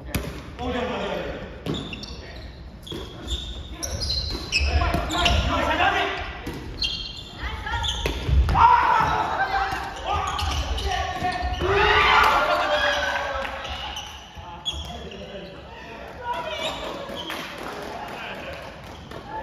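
A soft volleyball rally in a gymnasium: the ball is hit back and forth with repeated short slaps and thuds that echo in the hall. Players call out and talk throughout.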